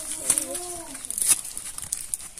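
Cardboard gift box and plastic wrapping being handled, with scattered crinkles and light taps. A soft low hum lasting about a second sounds over it at the start.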